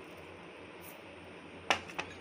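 A single sharp click near the end, followed by a fainter tick, as the small clay salt pot and its spoon are set down on the kitchen counter. Before that there is only faint room hiss.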